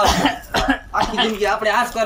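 Women's voices speaking Gujarati dialogue, with a cough-like burst among the words.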